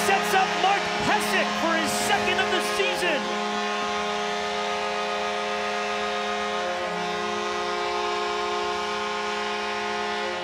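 Arena goal horn sounding one long, steady chord to signal a home-team goal, with the crowd cheering over it in the first three seconds.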